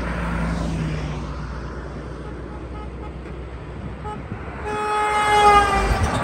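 Highway traffic passing close by, with a heavy vehicle's engine rumble at the start. About five seconds in, a passing vehicle sounds one long horn blast, its pitch dropping slightly as it goes by.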